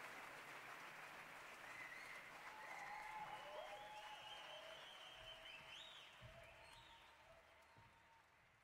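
Audience applause from a concert crowd, fading away, with a few drawn-out high calls from the crowd over it in the second half.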